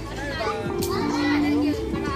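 Children playing and calling out in a swimming pool, their high voices overlapping, with music playing in the background in long held notes.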